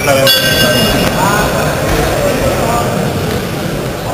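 Boxing ring bell struck about a quarter second in. Its ringing tone fades over a second and a half or more, over crowd noise and shouted voices.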